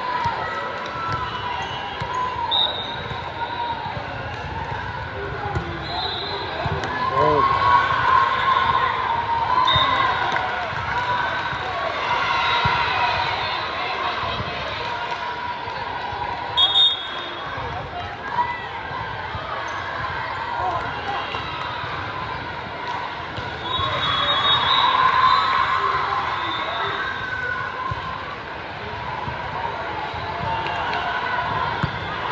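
General hubbub of a busy indoor volleyball hall: many overlapping voices of players and spectators calling and chatting, with volleyballs bouncing and being hit on the courts. Two sharp smacks stand out close together about seventeen seconds in.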